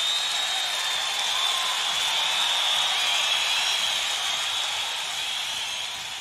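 Large arena audience applauding and whistling after the show, a thick wash of clapping with high whistles over it, starting to fade out near the end.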